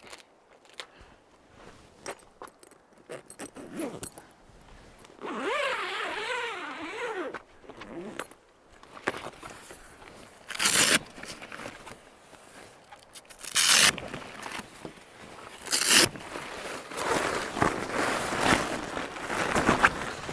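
The zip on the cover bag of an Iron Man 4x4 Delta Wing vehicle awning being pulled open, with several short, sharp rasps. Canvas rustles near the end as the awning wall comes out.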